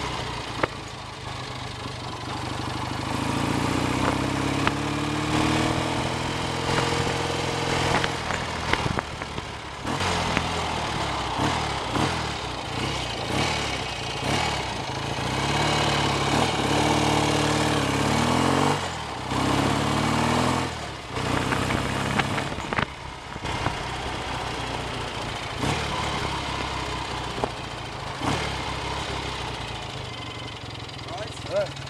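BSA A65 650 cc parallel-twin engine, freshly rebuilt and being run in, pulling on the road: its note rises and falls several times as the rider accelerates and backs off, with brief dips between, over steady wind noise on the microphone. In the last few seconds it runs quieter and steadier as the bike slows.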